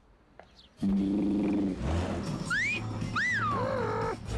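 Brief near silence, then music with held low notes starts about a second in. Later come two whistle-like glides: a rising one, then a rising-and-falling one that trails off downward, in the pattern of a wolf whistle.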